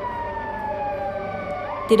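A siren wailing slowly: one long tone sliding steadily down in pitch, then starting to rise again near the end.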